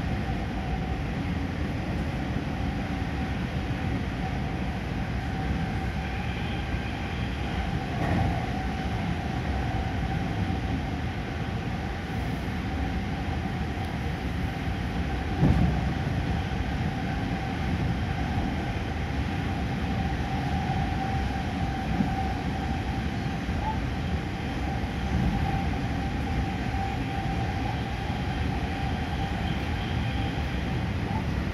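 Steady running noise heard from inside a JR West electric commuter train's passenger car: rumble of wheels and running gear with a constant mid-pitched whine. There is a single thump about fifteen seconds in.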